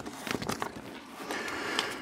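Plastic nine-pocket binder page rustling and crinkling as baseball cards are handled and slid into its pockets, with many small clicks, a little louder toward the end.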